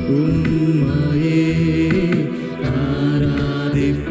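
A man singing a slow Tamil Christian worship song with long held notes over sustained keyboard accompaniment.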